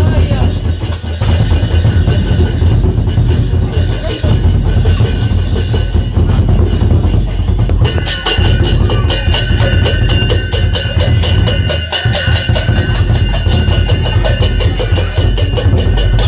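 Lion dance percussion: a large drum beating continuously. Fast, ringing cymbal clashes join in about halfway through.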